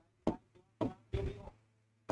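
Three short knocks of taps on an interactive touch-screen board, spaced about half a second and a third of a second apart, as a pen tool and colour are picked on the screen.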